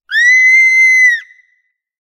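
A sudden, very loud, high-pitched scream held at one shrill pitch for about a second and then cut off: a jump-scare sound bursting out of silence.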